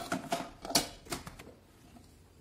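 A stainless steel mixer-grinder jar handled on its base: about half a dozen sharp metallic clicks and knocks over the first second and a half.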